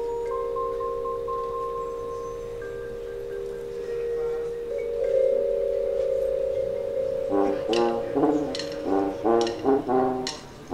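High school marching band music: the brass holds a sustained chord, with mallet percussion ringing underneath. About seven seconds in, the band breaks into short, accented chord hits in a punchy rhythm.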